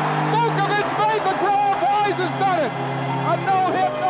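Harry Kalas's deep baritone voice calling play-by-play in broadcast clips, running without pause over a background music bed of sustained low notes.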